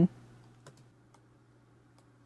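A few faint computer mouse clicks, two close together and one more a moment later, over a low steady hum.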